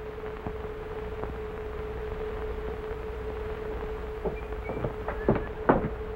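Steady hum and hiss of an old optical film soundtrack. About four seconds in, a run of short, sharp knocks and taps begins and grows busier toward the end.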